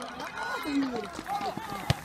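Several spectators' voices talking and calling out over one another, none standing out clearly, with a single sharp click near the end.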